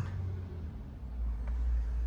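Low, steady rumble of a motor vehicle running nearby, heard from inside a closed car, growing a little about a second in.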